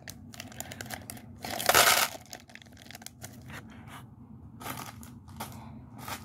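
Plastic candy packet crinkling and small candy-coated pieces clicking into a plastic cup. The loudest rush comes about a second and a half in, with a smaller one near the end.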